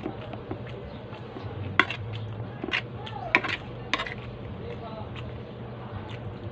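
A metal spoon clinking and scraping against a plate while rice is scooped up, with four sharp clinks between about two and four seconds in.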